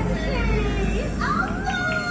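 A stage show's music with voices over it, with a higher voice rising and then holding a note in the second half.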